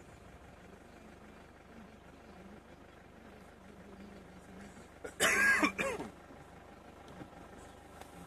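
A faint steady engine hum, with one short loud vocal sound, like a throat-clearing, about five seconds in.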